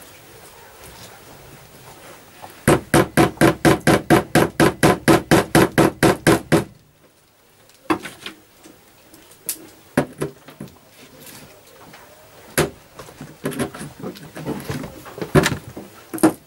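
Small hammer tapping steel track pins through cork underlay into a wooden baseboard. A quick, even run of about twenty light taps comes a few seconds in, followed by a handful of scattered single taps and knocks.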